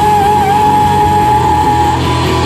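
Live rock band playing loudly through a PA: electric guitars and drum kit, with one high note held and wavering slightly through most of it.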